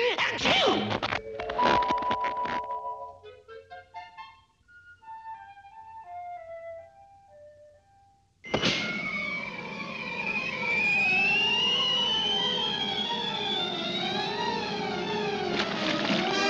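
Cartoon score and sound effects: a rapid cluster of cracking impacts, then a short run of soft notes stepping downward. About eight and a half seconds in comes a loud passage of busy orchestral music, with a long whistle rising steadily in pitch over it.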